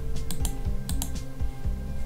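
Computer keyboard keystrokes, a few sharp clicks in two quick clusters, over background music with a low repeating beat.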